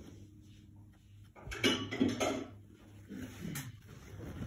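Light handling noises: a fingertip pressing and smoothing acrylic caulk into a ceiling moulding joint, with a few small clicks and rubs from about a second and a half in and one more sharp click near the end.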